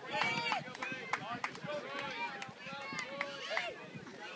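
Spectators at a youth baseball game cheering and shouting right after a bases-loaded hit, with several high voices overlapping.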